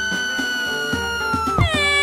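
A high-pitched cartoon crying wail: one long held note that drops in pitch near the end, over background music.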